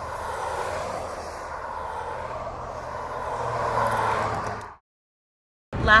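Steady rushing outdoor noise with a low hum underneath, swelling slightly, then cut off to dead silence about a second before the end.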